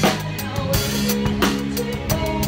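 Drum kit played live with a band: kick and snare strokes and Sabian cymbals over the band's held chords, with a hard accented hit at the very start and then a stroke about every 0.7 s.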